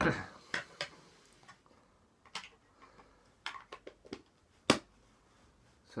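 Irregular sharp clicks and taps, about ten of them, the loudest a little past the middle, from hands handling a vape box mod and its atomiser.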